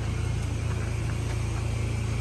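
A steady low rumble with no change in level or pitch.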